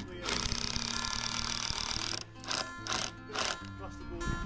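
Cordless drill driving a screw into a composite decking riser board: one run of about two seconds, then two short bursts.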